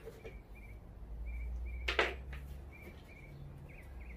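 A single sharp click about halfway through, from the NEMA-style stepper motor and its cable being handled on the mini mill's Y axis. Under it are a low steady hum and faint short bird chirps repeated every second or so.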